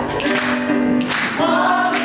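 A stage cast singing together in a musical-theatre ensemble number, several voices in chorus.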